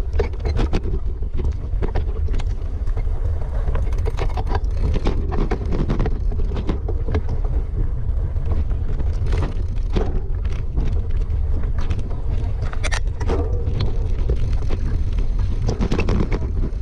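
Mountain bike rattling and clattering over a rough dirt singletrack descent, heard from a camera mounted on the bike, with steady wind rumble on the microphone and frequent sharp knocks from the trail.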